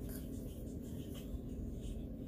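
Tarot cards being shuffled by hand, the cards sliding and rubbing against each other.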